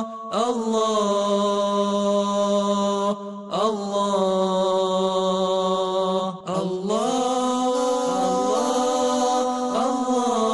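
Slow vocal chant played as closing theme music: long held notes in phrases of about three seconds, each opening with a slide up in pitch, with brief breaks between phrases.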